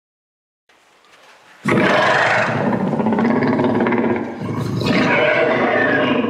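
Dinosaur roar sound effect: a long, loud roar that swells in about a second and a half in. It dips briefly and surges again near the end.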